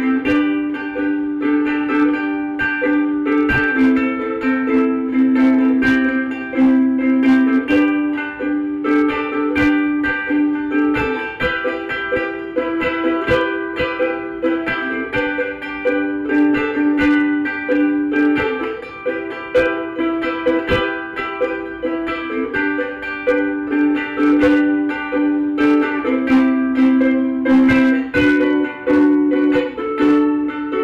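Vangoa soprano ukulele with Aquila strings strummed by hand, playing a run of chords that change every second or two.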